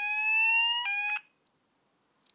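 Fulleon Roshni fire alarm sounder powered from a 9 V battery, sounding a sweep tone: the pitch rises slowly, drops back and rises again about once a second. It cuts off suddenly a little over a second in.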